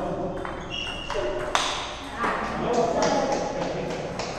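Celluloid-type table tennis ball clicking off bats and table in a short rally, a few sharp ticks with one loud crack about a second and a half in, ringing slightly in a large hall.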